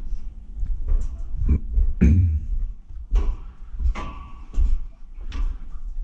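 Uneven thuds and knocks, about one a second, of a person climbing down a steel ladder, with rustle from the camera being handled.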